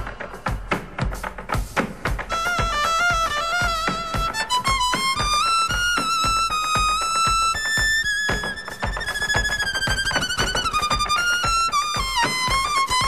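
Violin playing a melody with long held notes over a steady, fast percussive beat.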